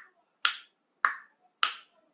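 A person snapping their fingers in an even beat, a little under two snaps a second, keeping time for a three-second countdown.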